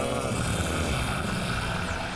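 A steady, warbling electronic drone: a cartoon hypnosis sound effect for a mesmerizing stare taking hold.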